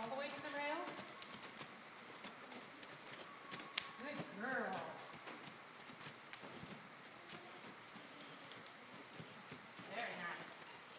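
Hoofbeats of a Percheron draft horse moving around an arena's dirt footing: faint, irregular knocks of hooves, with a short voice at the start and again about halfway through.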